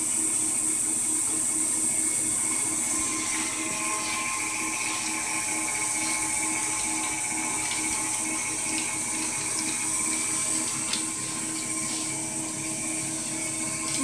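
Electric stand mixer running steadily: an even motor whir with a faint hum.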